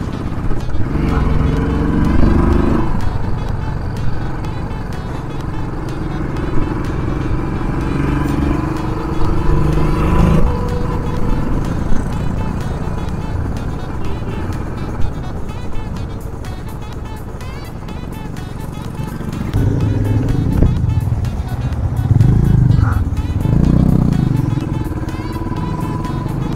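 Motorcycle engine and rushing road and wind noise during a ride, with background music over it. The low rumble is steady throughout, with pitched sounds swelling a few times.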